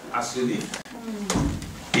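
A man's voice speaking in a small, echoing room, with a brief low bump about a second and a half in.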